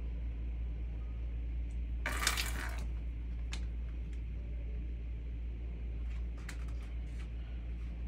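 A Sphynx cat's paws scrabbling against a plastic laundry basket: a brief rustling scrape about two seconds in and a few light clicks later, over a steady low hum.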